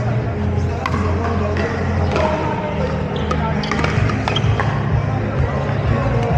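Pickleball paddles striking a hard plastic ball during rallies: a string of sharp pops at irregular intervals, some from neighbouring courts, over background music and voices.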